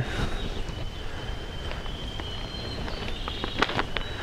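Quiet woodland background: a low, even rumble with faint high steady tones running through it. A few light clicks near the end come from the cord, tarp and stake being handled.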